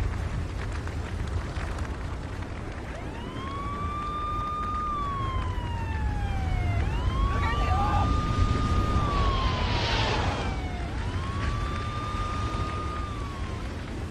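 Emergency siren wailing in three slow cycles, each rising quickly, holding its pitch and then falling slowly, over a steady low rumble.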